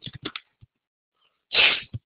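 A man's single short, sharp burst of breath about a second and a half in, after a near-silent pause.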